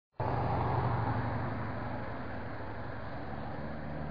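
Road traffic on a city street: the noise of cars going by, loudest in the first second and easing off, over a steady low hum.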